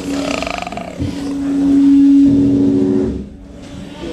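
Amplified band noise: a loud, droning held note, with a rough, wavering sound over it for the first second, that drops away about three seconds in.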